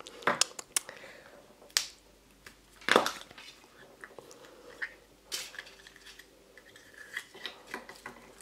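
Yellow plastic Kinder Surprise toy capsule handled and prised open by hand: a scattered series of sharp plastic clicks and clacks, the loudest about three seconds in.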